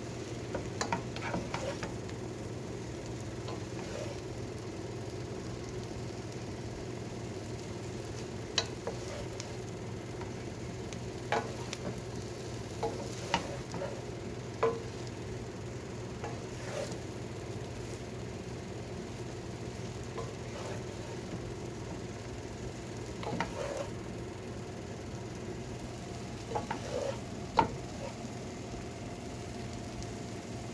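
Pancit noodles being stir-fried and tossed in a pot: a steady frying sizzle under a low hum, with scattered clicks and knocks of a wooden spoon and plastic spatula against the pot, the sharpest near the end.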